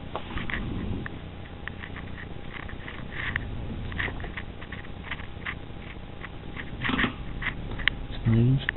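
Razor blade cutting and scraping along the edge of tacky Bondo body filler: irregular small crackling scrapes and clicks, with a louder scrape about seven seconds in, over a faint steady hum.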